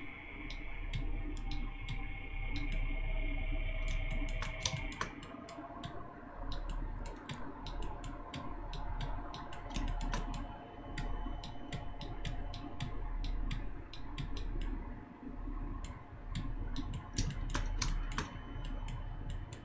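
Irregular clicking of a computer mouse's buttons and keyboard keys, many short sharp clicks spread throughout, over a steady low hum.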